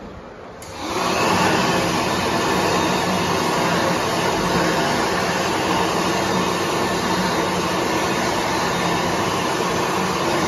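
World Dryer XA electric hand dryer kicking on about a second in, its motor and fan then blowing air steadily and loudly through the chrome nozzle.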